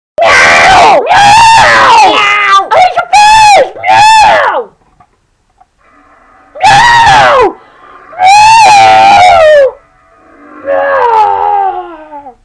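A run of loud, drawn-out screaming yowls in an angry-cat voice, wavering in pitch. About five come close together, then after a short pause three more.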